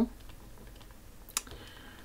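Quiet light taps and scratches of a stylus writing on a touchscreen, with one sharper click a little over a second in.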